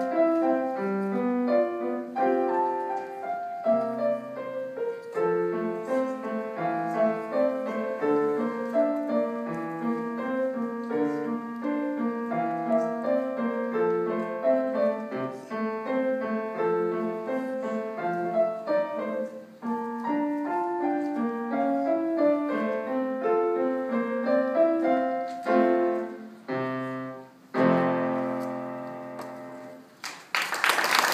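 Solo grand piano playing a classical-style piece, ending on a long final chord a little before the end that rings and fades away.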